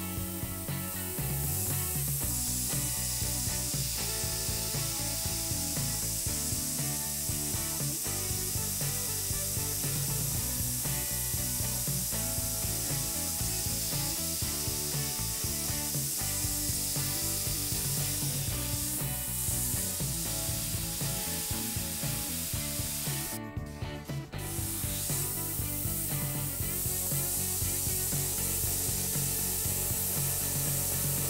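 Master G233 gravity-feed airbrush spraying, a steady hiss of air and paint that cuts out briefly about two-thirds of the way through as the trigger is let off, over background music.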